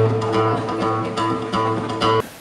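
Strummed acoustic guitar music, with a steady low bass note held underneath the chords.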